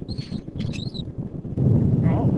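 Two short, high chirping whistles of a dolphin, about half a second apart, over steady low background noise.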